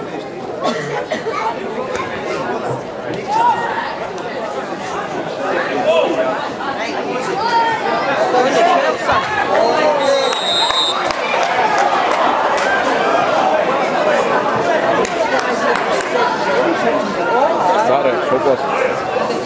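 Many voices chattering at once, a steady babble of overlapping talk. A brief high tone sounds about ten seconds in.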